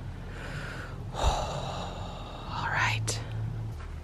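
A person's breathy gasps in the cold, three in a row, the middle one the loudest, over a steady low hum.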